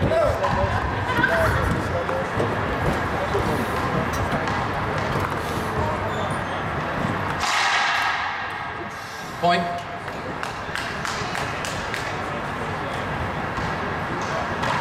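Racquetball rally: the ball cracking sharply off racquets and the court walls in a run of hits, over steady crowd chatter. A short burst of crowd noise rises about seven and a half seconds in.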